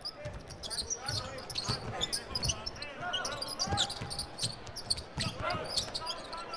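Basketball being dribbled on a hardwood court, with short sneaker squeaks and the hum of the arena crowd underneath.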